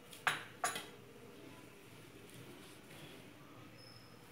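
Two short metallic clinks about a third of a second apart near the start, as a hand mixing gram flour knocks against a stainless steel plate. After that only faint sounds from the mixing.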